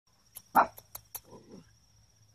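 A playing puppy gives one short, sharp yap about half a second in, followed about a second later by softer, lower puppy noises, with a few sharp clicks scattered around them.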